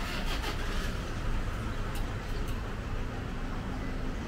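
Steady rumble of distant motorway traffic, with a few faint clicks.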